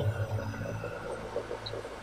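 A low, steady hum under a faint background hiss, with no speech.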